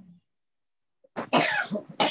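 About a second of silence, then a short burst of a person's voice lasting about a second.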